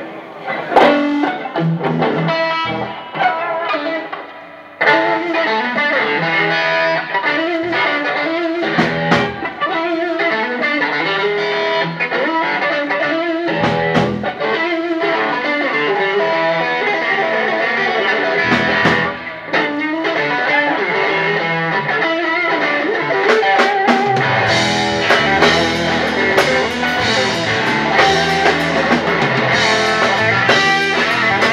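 Live blues-rock band playing: electric guitar leads, with drum kit and bass guitar. The sound is thinner at first and fills out about five seconds in, and the low end grows heavier near the end.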